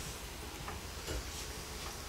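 Low, steady room noise with a few faint ticks and clicks.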